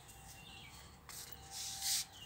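Brief rustling, scraping noises that grow loudest near the end, with a faint bird chirp about half a second in.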